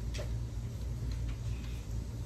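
A short swish and a few faint light ticks of a comb being drawn through thick curly hair, over a steady low hum.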